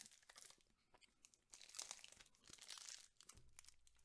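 Faint crinkling and rustling of a chocolate praline's wrapper being handled and opened by hand: a scatter of small crackles, busiest in the middle.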